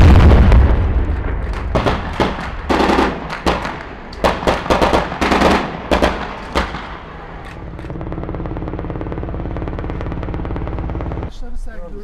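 A loud blast dies away at the start, followed by rapid gunfire in short bursts for several seconds. Then a hovering helicopter's steady rotor and engine sound takes over and cuts off suddenly near the end.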